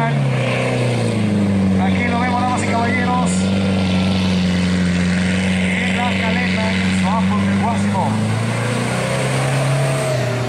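Four-cylinder engine of a 4x4 off-road truck roaring at high revs as it ploughs through a mud pit, its pitch climbing about a second in, held high, then falling away near the end.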